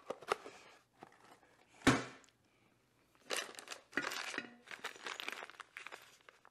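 Plastic parts bag being handled, crinkling and rustling, with a few small clicks and knocks of parts.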